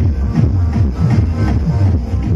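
Loud electronic dance music with a heavy, dense bass line, played through a truck-mounted DJ loudspeaker rig.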